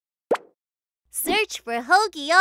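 A single short cartoon pop, a quick rising blip, followed about a second later by a high-pitched, sing-song cartoon character voice that glides up and down in pitch.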